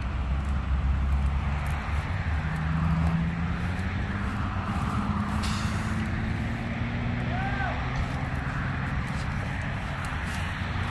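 Low, steady rumble of vehicle engines running at idle, their pitch drifting slightly. A short hiss comes about halfway through.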